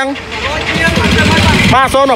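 A motorcycle engine running close by with a rapid low putter, loudest in the second half, before a voice comes back in near the end.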